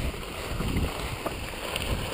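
Telemark skis sliding and scraping over packed snow, a steady rough swish, with wind buffeting the microphone.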